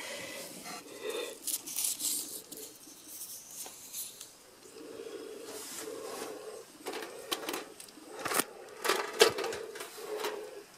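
Handling noise in a hen-house nest box: rustling in wood-shaving bedding and light clicks and knocks, in scattered bursts, as eggs are gathered by hand.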